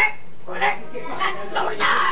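An Amazon parrot making a quick series of about four short calls, chattering between its talked football chants.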